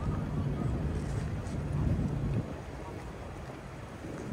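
Wind buffeting the microphone: a low, gusty rumble that drops away about two and a half seconds in, leaving a quieter background.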